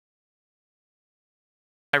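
Dead silence, with the sound track blank, until a man's voice starts speaking just before the end.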